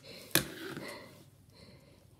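A single soft click, then a short breathy exhale, then quiet room tone.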